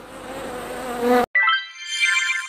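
Title-animation sound effects: a buzzing sound for just over a second, cutting off abruptly. After a brief gap, a bright rising chime with quick, high ringing notes.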